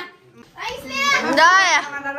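A high-pitched voice speaking or calling out excitedly, its pitch swooping up and down, starting about half a second in.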